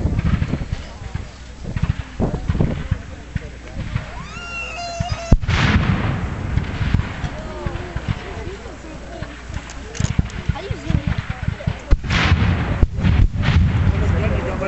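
Black-powder gunfire reports from Civil War reenactment muskets and cannon. One sharp, loud shot comes about five seconds in and trails off, and several more follow near the end, over a steady low rumble.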